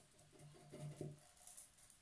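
Near silence, with a few faint soft dabs of a paint sponge against a tin can between about half a second and a second in.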